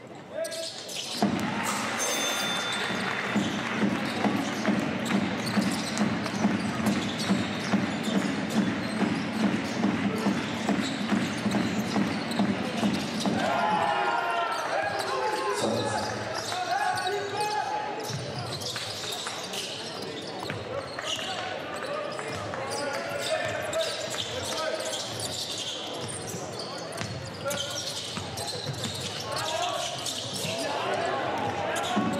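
Live basketball arena sound. For the first dozen seconds there is crowd noise with a steady beat about twice a second. After that come lighter court sounds: voices calling out and a basketball bouncing on the hardwood.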